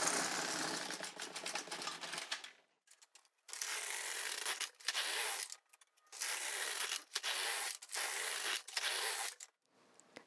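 The plastic carriage of an LK150 knitting machine being pushed back and forth across the needle bed, knitting rows. There is one long pass of about two and a half seconds, then after a short pause six shorter strokes, each under a second with brief gaps between them.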